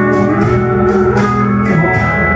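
Live country band playing between vocal lines: a steel guitar holds and slides its notes over a steady strummed rhythm of about four strokes a second.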